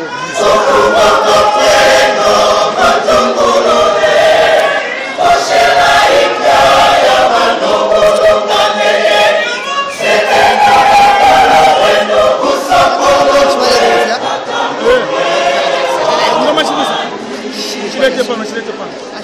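A large church choir singing in harmony, in phrases broken by brief pauses.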